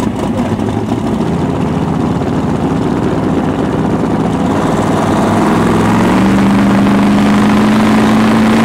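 Drag-race Fox-body Mustang's engine idling at the line, then brought up to a higher, steady engine speed about six seconds in, a little louder.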